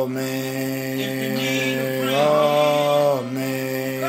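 A man's voice singing long, drawn-out notes: one steady note, then a slightly higher note about two seconds in, held for about a second before dropping.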